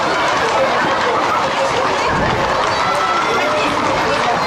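A crowd running down a street: many overlapping voices calling and talking over the footsteps of the runners.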